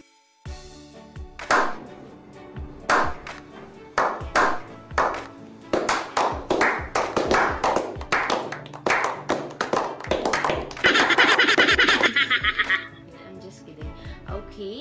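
A group clapping over music, the claps coming closer and closer together and ending in a loud dense burst of clapping about two seconds long.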